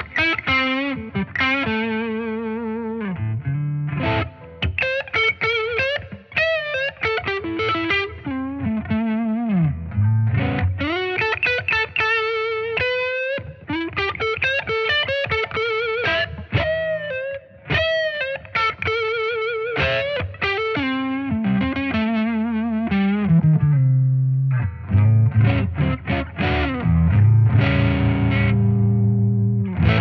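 Les Paul-style electric guitar played through a Positive Grid Bias Head modelling amp, with a distorted tone: a lead line of single notes with vibrato and bends. Thicker low chords come in near the end.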